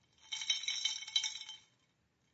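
Ice rattling and clinking in a drinking glass, with a thin ringing from the glass, lasting about a second and a half.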